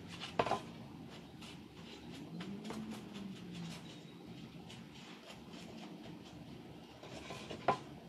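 Faint dabbing and rubbing of a sponge carrying a little paint along the edges of a craft plaque, for a dry-brushed patina, with a couple of light knocks as the board is handled, about half a second in and just before the end.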